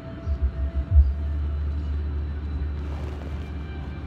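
A few low bumps of the phone being handled in the first second, then a steady low rumble inside a car cabin, with faint rustling of cloth near the end.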